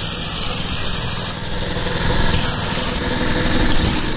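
Portable generator engine running steadily, powering the site's work lights, with a high hiss over it that is strongest in the first second or so.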